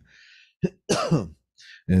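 A man clears his throat with one short, voiced cough that falls in pitch, after a faint breath.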